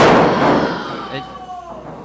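A single loud slam on the wrestling ring, fading out over about a second.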